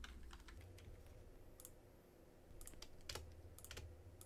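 Faint computer keyboard typing: scattered, irregular keystrokes, with a brief lull near the middle and a cluster of keystrokes in the second half.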